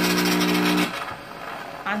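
Mr. Coffee espresso machine running its steam function: a steady electric pump hum with steam hissing into the milk jar, both cutting off suddenly just under a second in.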